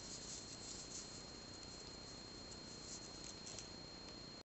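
Faint soft scratching and rustling of a 3.5 mm metal crochet hook pulling yarn through single crochet stitches, with a thin steady high whine underneath.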